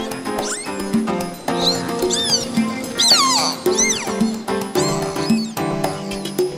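Instrumental music with dolphin whistles mixed over it. Several arching whistles rise and fall in quick succession above the steady musical notes.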